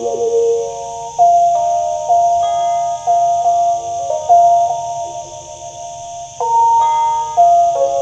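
Phin pia, the northern Thai (Lanna) stick zither with a coconut-shell resonator held against the player's chest, playing a slow melody of plucked notes that ring and fade one after another. The first note wavers in pitch.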